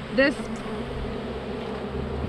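A mass of Carniolan honeybees from a freshly shaken-in package buzzing in a steady hum around an open hive.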